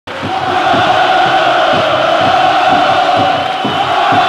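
Football stadium crowd chanting loudly in unison, a steady wall of many voices, with irregular low thumps beneath it.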